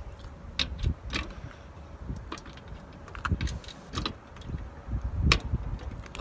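Irregular clicks and knocks of a handheld phone being handled while walking, over a steady low rumble of wind on the microphone.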